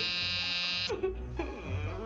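A harsh, steady electronic buzzing tone that cuts off abruptly about a second in, followed by short sliding pitch sweeps.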